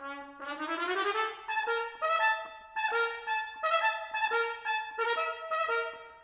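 Solo trumpet playing a passage of wide leaps. It opens on a low note that slides upward over about a second, then moves in short separate notes jumping between a high note and lower ones. The playing aims small on the large intervals, not pushing for volume.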